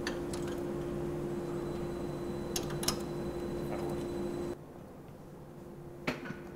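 A steady machine hum with one clear held tone and two light clicks close together about two and a half to three seconds in; the hum cuts off suddenly about four and a half seconds in, leaving quieter room tone.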